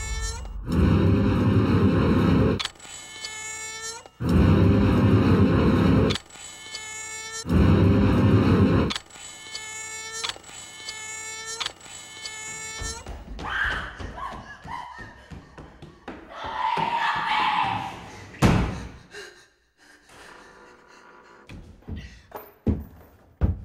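Trailer sound design: three heavy, rumbling hits about two seconds each, a couple of seconds apart, with ringing tones sounding through and between them. After that come quieter, scattered eerie sounds with a few short swells.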